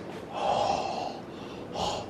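A man's loud, breathy, voiceless gasp with his mouth wide open, drawn out for well over half a second, then a shorter breathy burst near the end.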